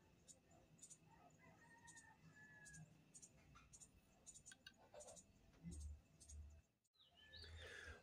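Near silence: a faint background with scattered light clicks and a few faint high chirps.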